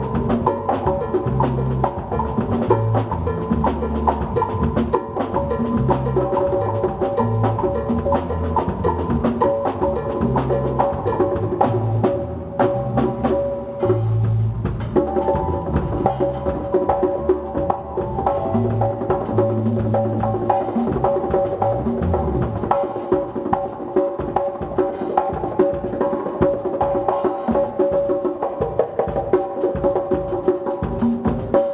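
Congas played by hand in a live band, with a drum kit and sustained keyboard chords. A low bass line runs under them and drops out about three quarters of the way through, leaving the congas and chords.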